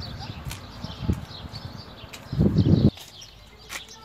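Small birds chirping in the background, with low rumbling noise on the microphone that swells briefly and cuts off suddenly about three seconds in.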